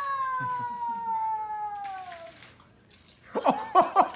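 A toddler's long, held high-pitched "aaah" shout that slowly falls in pitch and fades out after about two and a half seconds. After a short quiet gap, quick repeated voice bursts begin near the end.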